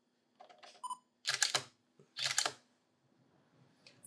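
A camera's shutter fires twice, about a second apart, each release a short double click with a dull thump beneath it. Just before, there are a few small clicks and a brief electronic beep.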